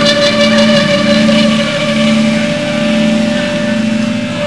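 Live rock band's electric guitars holding loud, sustained distorted notes over a steady drone, easing off slightly after a second or so.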